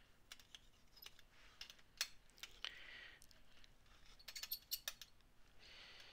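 Faint, scattered clicks and taps of a metal blade and fingers working raw polymer clay pieces on a hard work surface, with a sharper tap about two seconds in and a quick run of clicks past the four-second mark. Two brief, soft scraping sounds as the blade is drawn across the clay.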